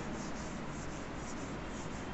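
Board duster rubbing back and forth across a chalkboard, wiping off a chalk drawing: a steady scrubbing hiss made of quick repeated strokes.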